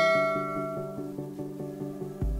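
Background music of plucked guitar notes, with a bright chime ringing out and fading away over the first second.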